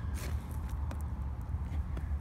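Low steady rumble of wind on the microphone outdoors, with two faint ticks, one just after the start and one about a second in.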